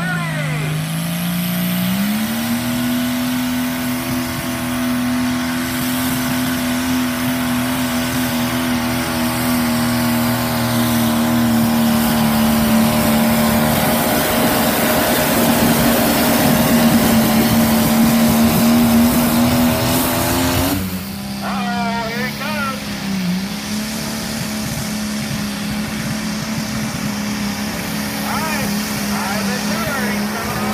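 Pulling-tractor engines at full throttle dragging a weight-transfer sled. One engine's note climbs over the first two seconds and holds steady for about twenty seconds, then a sudden cut to another tractor's engine running steadily, with voices over it.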